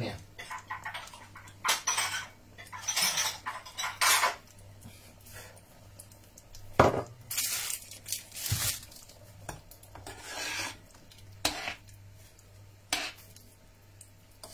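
Bowls and cutlery being set out, giving a scattered series of short clinks and knocks, over a faint steady low hum.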